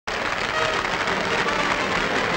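Audience applauding, a steady wash of clapping.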